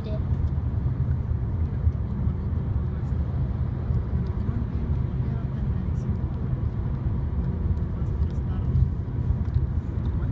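Steady low rumble of a car heard from inside the cabin, engine and road noise, with a few faint ticks.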